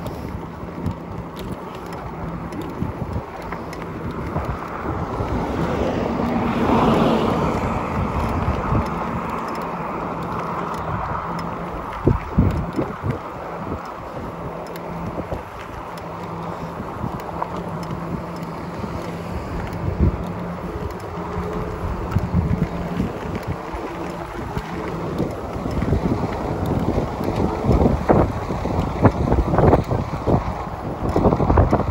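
Wind buffeting the microphone while riding an e-bike along a road, with a steady low hum underneath and a louder swell about six seconds in.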